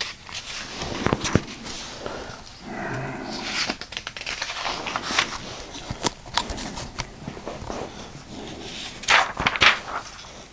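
Paper pages of a thick textbook being turned and handled, in crackly rustles and soft snaps, loudest near the end.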